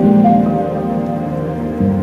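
Ambient modular synthesizer music: layered sustained notes from an Expert Sleepers Disting EX sample player, sequenced by Mutable Instruments Marbles and processed through Mutable Instruments Clouds and a T-Rex Replicator tape echo. A fresh chord sounds at the start and a new low note comes in near the end.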